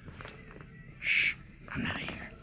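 A short, loud, animal-like growl or hiss from a person's voice about a second in, followed by a weaker vocal noise near the end.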